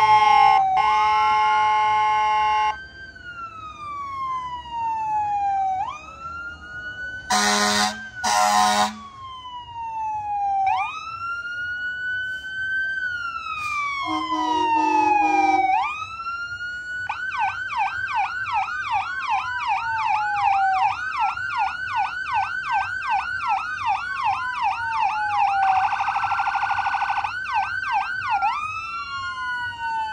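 Electronic emergency-vehicle sirens wailing in slow rising and falling sweeps. Past the middle they switch to a fast yelp for several seconds, then go back to the wail. They are broken by horn blasts: a long one at the start, two short blasts about 8 s in, a lower one around 15 s, and a buzzing horn tone near the end.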